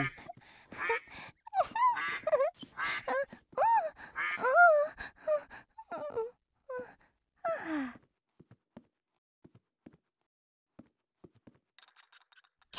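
Wordless voice-like calls, short and rising and falling in pitch, one after another for about eight seconds, then a few faint clicks.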